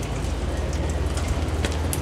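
Bus wheelchair lift lowering its platform: a steady low hum from its drive under a noisy hiss, with a few light ticks.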